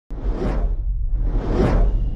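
Two whoosh sound effects, each swelling up and fading away, over a steady low drone: the sound design of an animated title card.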